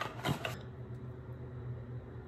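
A couple of brief handling sounds from a product box in the first half-second, then a steady low hum.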